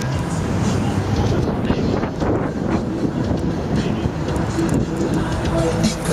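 Steady rumble of a car driving through city streets: road and wind noise, loud throughout.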